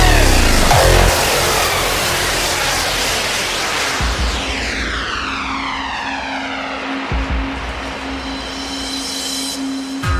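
Hardstyle track: the pounding kick drum stops about a second in, giving way to a breakdown. Whooshing noise sweeps fall in pitch, a low synth note is held from about four seconds in, and a few deep bass hits land before the vocal returns.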